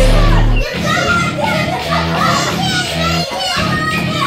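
Pop music with a heavy bass note at the start and then chords repeating about once a second, with children's voices over it in a large room.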